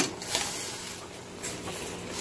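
Chicken and vegetables sizzling in a stainless steel pot, with a sharp clink of a utensil against the pot at the start and a couple of lighter clicks after.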